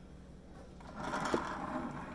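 A digital scale slid across a countertop: a rubbing scrape of a little over a second, starting about a second in, with a small knock partway through.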